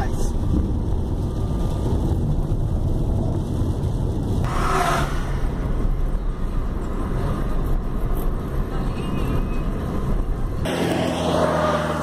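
Steady low road and engine rumble heard from inside a Peugeot 2008's cabin while it drives along, with a brief louder rush of noise about five seconds in.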